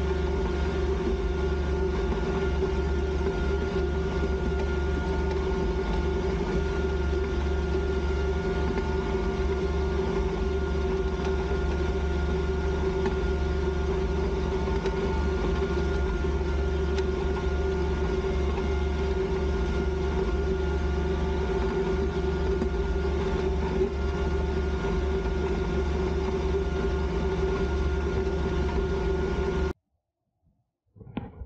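Kubota B2320 compact tractor's three-cylinder diesel engine running steadily under load while it pulls a grading scraper through loose dirt. The sound cuts off suddenly near the end.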